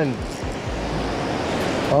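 Steady rush of river current flowing close by, with a brief low rumble of wind on the microphone near the middle.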